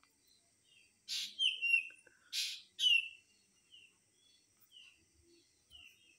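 Small birds chirping in short, falling chirps that repeat every half second or so. The chirps are loudest between about one and three seconds in, then fainter; a faint steady high insect trill runs underneath.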